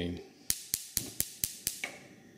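The spark igniter of a propane-fuelled gas range burner clicks six times in quick succession, about four clicks a second, until the burner lights.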